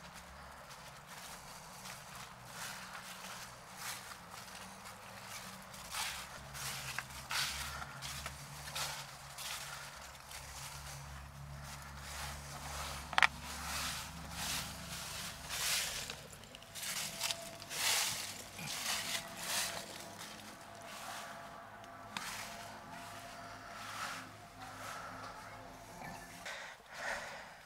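Footsteps of a walker on a leaf-strewn forest path, uneven steps, with one sharp click about halfway through.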